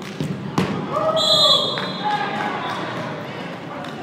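A sharp thud of a ball strike on the hard indoor court, then about a second in a short blast on a referee's whistle, with players' shouting voices around it.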